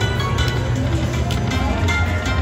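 Dragon Link Panda Magic slot machine playing its free-game bonus music, with a run of short chiming tones as the reels spin and land, over a steady low hum.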